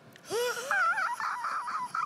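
A woman's high-pitched, wavering squeal of delight, breathy and laughing, starting a moment in and going on until the end.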